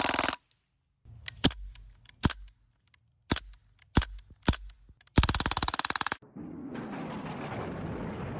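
Crosman DPMS SBR CO2-powered BB rifle firing: the last of a full-auto burst, then single semi-auto shots, some in quick pairs, then a second full-auto burst about a second long, a rapid even rattle of shots. From about six seconds in, a steady rushing noise follows.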